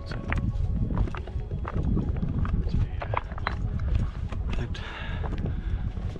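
Footsteps of hiking boots on loose summit rock and stones, an uneven run of clacks and crunches several times a second over a steady low rumble.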